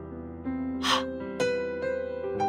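A single breathy /h/ sound, a short puff of air pushed out quickly, about a second in, over background music of slow sustained notes.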